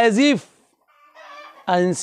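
A man's voice: a drawn-out spoken word at the start, a short pause with a faint low-level noise, then speech again near the end.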